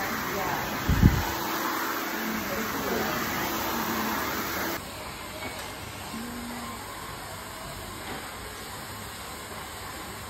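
Background voices and music, with one sharp thump about a second in. Near the middle the sound cuts to a quieter steady hiss.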